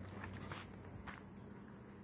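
Faint handling and rustling of a glossy paper catalog as a page is turned, with two soft ticks about half a second apart, over a low steady hum.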